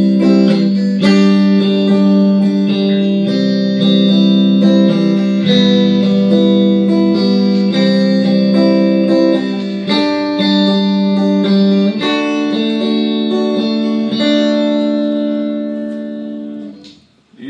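Stratocaster-style electric guitar through an amplifier, strummed in a steady rhythm on open chords in standard tuning: C major, G major, C major, E minor, C major, G major and D major, with each chord ringing a second or two before the next. The chords fade out near the end.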